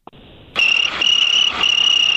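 A cricket-chirping sound effect starts about half a second in: a high, steady chirping broken into trains about twice a second. It is played as the 'crickets' gag, which here means 'impress me'.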